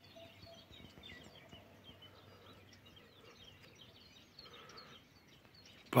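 Small birds chirping faintly: many short, high chirps scattered throughout over a quiet background hiss.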